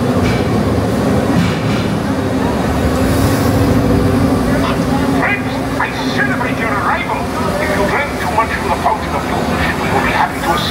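Ride vehicle running steadily along its track with a low, even hum, with indistinct voices joining over it from about halfway through.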